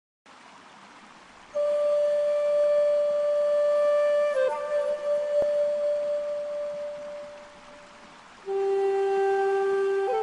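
Solo flute music in long, breathy held notes. One note is sustained for several seconds, dips slightly in pitch partway through and fades away; a second, lower note begins near the end.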